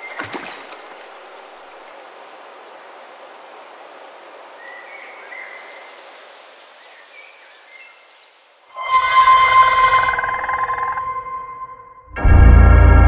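Jungle ambience, a steady outdoor hiss with a few faint bird chirps. About nine seconds in, a sudden loud ringing sound-design hit breaks in, a horror-film stinger, fading over about two seconds with one steady tone held on.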